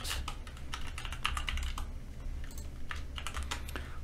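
Typing on a computer keyboard: an irregular run of quick key clicks.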